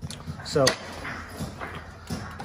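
A man says a single word, "So", followed at once by one brief sharp click. Otherwise there is only quiet handling noise.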